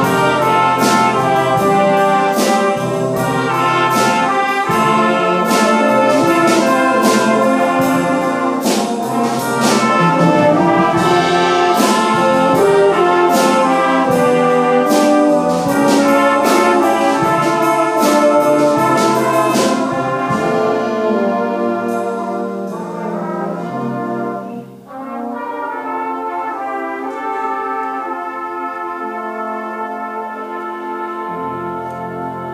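Small brass band of cornets, tenor horn, euphonium and trombones playing an arrangement, loud and with regular percussion hits for the first two-thirds. From about 20 seconds in it softens into sustained held chords.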